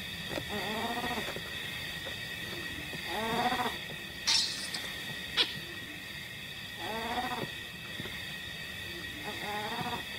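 Newborn baboon crying: four short pitched calls about three seconds apart, each rising and falling in pitch.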